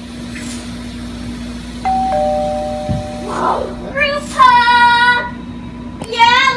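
Children's voices in the background, with one child letting out a long, high-pitched note about four seconds in, the loudest sound here. A steady low hum runs underneath.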